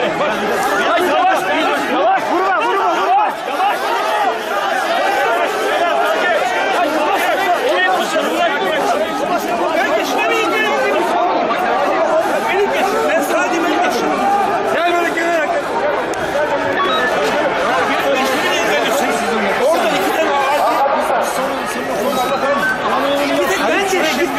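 A loud, agitated jumble of many men's voices talking over one another without a break.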